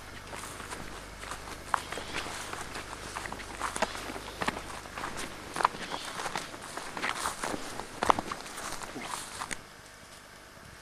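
Footsteps through tall dry grass and low scrub: irregular crunching and rustling of stems and twigs underfoot, stopping shortly before the end.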